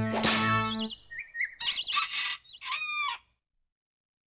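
Cartoon soundtrack: a jaunty musical phrase with a swish ends about a second in, followed by a string of short bird-like chirps, warbling trills and a squawk with falling pitch, which cut off suddenly about three seconds in.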